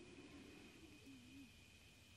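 Near silence: room tone in a pause between sentences, with a faint steady high-pitched tone running through.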